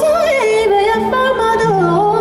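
Live band music from guitars and drums, with a high, wavering lead melody that steps up and down over held bass notes.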